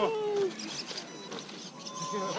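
A drawn-out vocal cry that falls slightly in pitch for about half a second at the start, then quieter background murmur.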